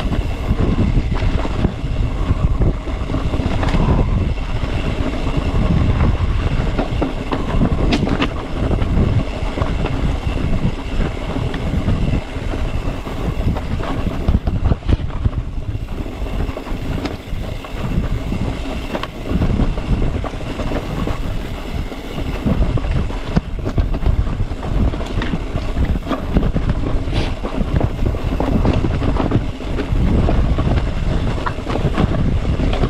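Mountain bike riding over a rough, leaf-strewn dirt trail: a steady rumble of tyres on the ground, with frequent clicks and rattles from the bike jolting over rocks and roots.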